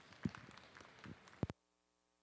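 Sparse, scattered hand clapping from a thin arena crowd, with a few knocks. It cuts off suddenly about one and a half seconds in, leaving only a faint steady electrical hum.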